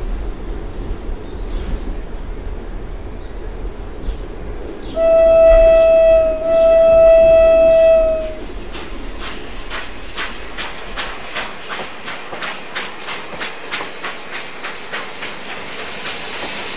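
Cartoon toy steam train sound effect: a steady rumble, then two long whistle blasts on one pitch, about five seconds in, which are the loudest sound. After them comes a rhythmic clickety-clack of wheels on the rails, about three to four clicks a second.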